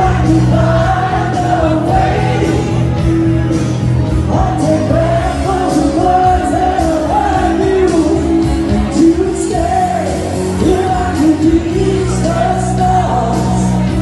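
A woman singing live into a microphone over loud backing music, with long held, wavering notes in the melody.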